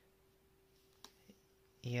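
Near silence: quiet room tone with a faint steady hum and one faint click about halfway through, before a voice begins near the end.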